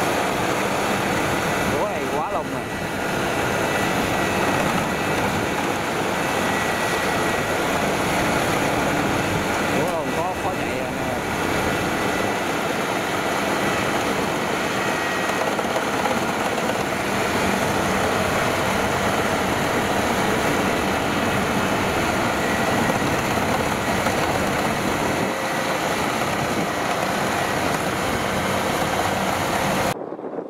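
Kubota DC-105X rice combine harvester running steadily as it cuts, its V3800 diesel engine working under load.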